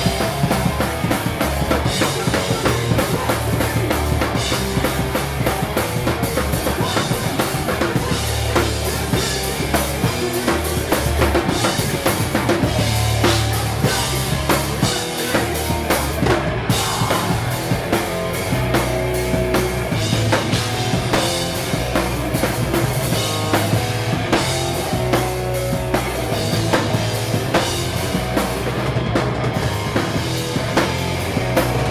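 Hardcore punk band playing live at full volume: electric guitars, bass and a drum kit with steady bass drum and snare hits, with a momentary break about halfway through.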